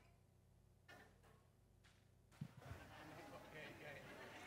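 Near silence with faint, indistinct voices; about two and a half seconds in there is a low thump, followed by a soft murmur of voices.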